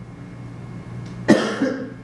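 A single sharp cough about a second in, with a softer after-sound, over a steady low room hum.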